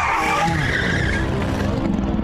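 End-card sound effect: a sweeping whoosh leading into a steady, rough rumbling noise like a car skidding.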